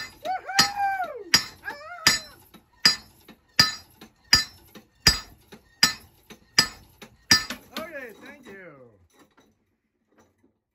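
A foot-operated treadle hammer's sledgehammer head striking its steel anvil plate about ten times in a steady rhythm, roughly one blow every three-quarters of a second, each a sharp metallic clank, stopping about seven seconds in. A few drawn-out tones that rise and fall come between the blows near the start and just after the last one.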